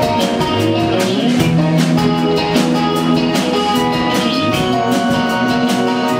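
Live rock band playing: electric guitars holding chords over a drum kit keeping a steady beat.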